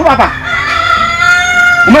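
A single long call held on one high pitch for about a second and a half, between stretches of speech.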